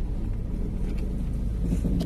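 Car engine running at idle, a steady low hum heard inside the cabin.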